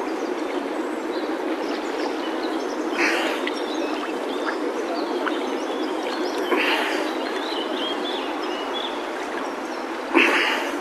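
River water sloshing and lapping against a camera held at the surface by a swimmer drifting with the current, a steady churning noise with louder splashes about three seconds in and again near seven seconds.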